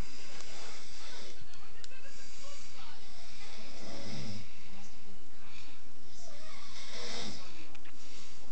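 Steady hiss of background noise, with a short, low, rough human vocal sound about four seconds in and another near the end.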